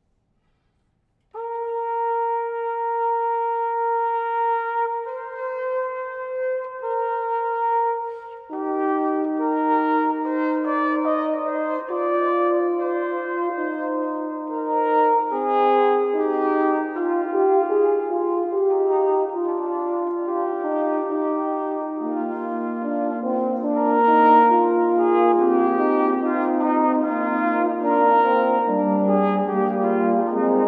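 Brass ensemble of French horns and euphonium playing slow sacred Renaissance or Baroque music. A single held note starts about a second and a half in, more voices join in chords around eight seconds in, and a lower bass line enters in the second half.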